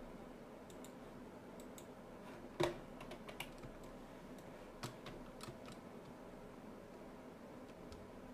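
Computer keyboard keys and mouse buttons clicking at scattered intervals, about a dozen clicks, the loudest about two and a half seconds in, over a faint steady room hum.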